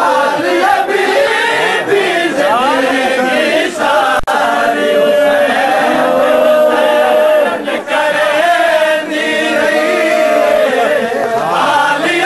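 Many men's voices chanting a noha, a Shia lament, together in a dense crowd, loud and continuous.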